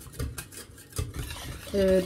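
Wire whisk stirring tomato soup in a stainless steel pot, with irregular clinks of the whisk against the pot. The cold water just added is being whisked in.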